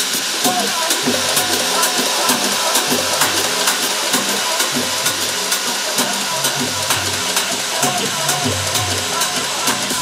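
A house track played loud over a club sound system during a breakdown, with the bass filtered out. Hi-hats tick in a steady rhythm over busy mid-range sounds.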